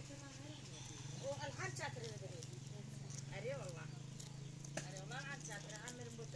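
Quiet speech in short phrases over a steady low hum.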